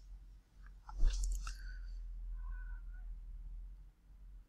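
Faint close-microphone noises over a steady low electrical hum, with a short rustle about a second in.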